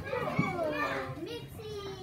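Young children talking and chattering in high-pitched voices.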